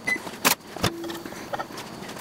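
A few sharp clicks and knocks, the loudest about half a second and just under a second in: a microwave door opening and a hot cheese taco shell being taken out with a spatula.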